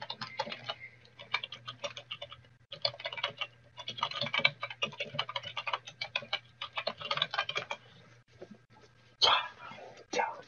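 Typing on a computer keyboard: a rapid run of keystrokes with a brief pause about two and a half seconds in, stopping about eight seconds in.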